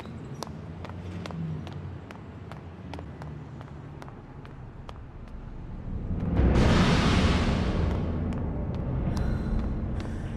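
A vehicle passing on a street: a loud rushing swell about six seconds in that fades over a few seconds. Under it there is a low drone with regular sharp clicks, about three a second.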